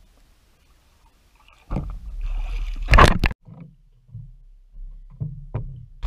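Water splashing and sloshing right at the microphone beside a swimmer's board. It builds about two seconds in to a loud slap and knocks around three seconds, then gives way to a few softer sloshes and knocks.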